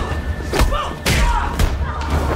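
Punches and body blows landing in a hand-to-hand fight, two sharp impacts about half a second and a second in, with short grunts of effort.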